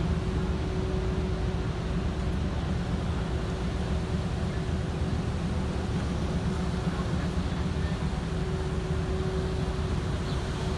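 Steady low rumble of a car running, heard from inside its cabin, with a faint steady hum above it.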